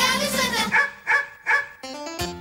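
Children's song: a held sung note, then three short, evenly spaced vocal calls about a second in, with accompanying music throughout.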